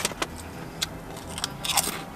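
Plastic potato-chip bag crinkling as a hand rummages in it for chips: a few sharp crackles, then a denser burst of crackling near the end.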